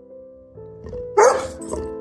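Yellow Labrador retriever barking twice just over a second in, the first bark loud and the second shorter, over soft background piano music.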